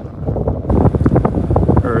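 Wind buffeting the phone's microphone in a moving car: a loud low rumble with rapid irregular thumps that sets in about a quarter second in.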